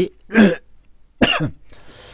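A man coughing twice, about a second apart, the second cough trailing off into a breathy exhale.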